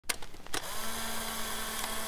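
Two sharp clicks, then a steady mechanical whir with hiss and a faint low hum.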